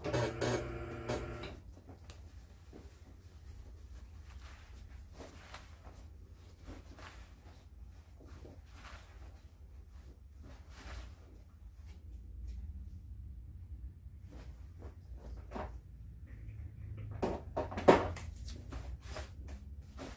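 A cotton towel rubbing and squeezing wet hair, a string of soft rustling scrubs. A short pitched tone opens the sound, and a sharp click stands out near the end.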